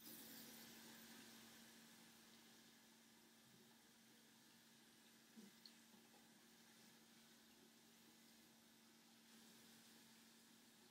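Near silence: faint steady hiss with a low hum, and two faint clicks about five and a half seconds in.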